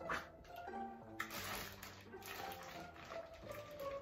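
Quiet background music with held notes, under the wet chewing and lip-smacking of someone eating a seafood boil.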